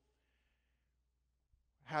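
A pause in a man's speech: near silence with a faint breath, then he starts speaking again near the end.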